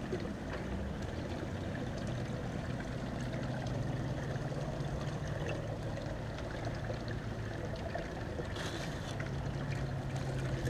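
Water running steadily over a sluice box as dirt is washed through it, with a steady low hum underneath. Near the end, a brief scraping rustle as more dirt is scooped.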